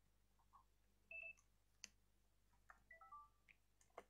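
Near silence, broken by a few faint short beeps at several pitches and some soft clicks.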